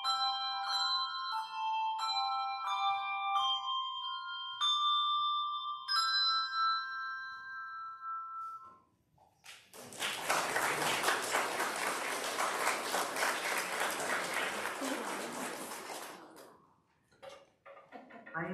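Small handbell choir playing, bell notes struck one after another and ringing on, the last chord dying away about eight seconds in. The congregation then applauds for about six seconds before the clapping tapers off.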